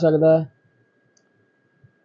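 A man's voice speaking for about half a second, then near silence with one faint click near the end.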